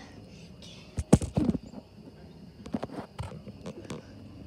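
Knocks and bumps from someone climbing a playground rock wall with a phone in hand: a loud cluster of knocks about a second in, then a few lighter taps near the end.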